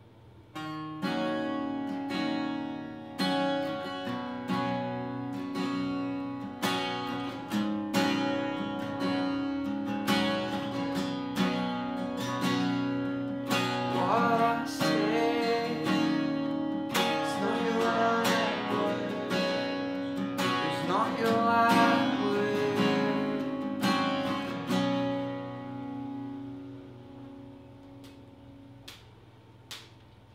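Instrumental passage of an acoustic band: a Hohner piano accordion holds chords over strummed acoustic guitars. It begins about a second in and dies down over the last few seconds.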